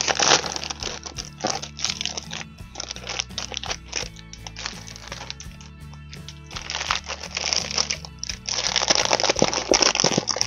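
Clear plastic packaging crinkling and rustling in irregular bursts as it is handled, loudest near the end, over background music with steady low notes.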